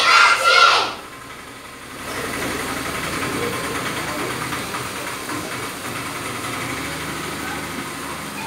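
A class of schoolchildren calling out together in unison, breaking off within the first second. From about two seconds in, a steady, even background noise carries on to the end.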